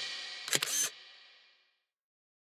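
The last notes of a children's song die away, then a camera-shutter sound effect clicks briefly about half a second in.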